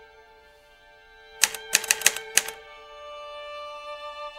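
Typewriter keystroke sound effect: a quick run of sharp clacks lasting about a second, in the middle, over soft background music with sustained notes.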